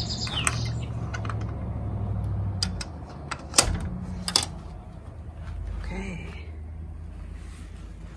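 Metal hook-and-eye latch on a greenhouse door worked by hand: a few sharp metallic clicks and clinks between about two and a half and four and a half seconds in, the loudest near three and a half seconds. A low steady hum runs under the first part.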